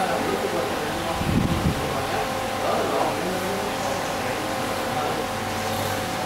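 Open-air background noise: a steady hiss with a faint steady hum and faint distant voices. A brief low rumble comes about a second and a half in.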